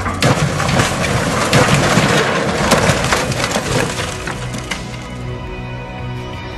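Crash and collapse of a toppling tower: a dense clatter of many breaking impacts for about four seconds, thinning out near the end, over background music.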